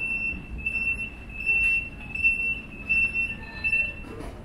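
A high-pitched squeal at one steady pitch, breaking off and starting again about every half second, over a low rumble of hall noise.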